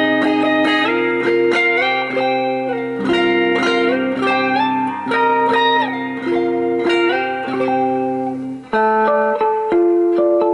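Electric guitar played solo in a clean tone: picked notes and chords ring out, changing every half second or so over a long-held low note. About nine seconds in the sound breaks off briefly, then new notes start.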